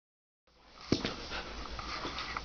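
Siberian husky puppy playing with a rope toy, with a sharp thump about a second in followed by soft scuffling.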